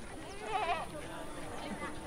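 A sheep bleating once, a short wavering call about half a second in, over faint background sound.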